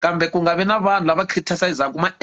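Speech only: a man talking without a pause.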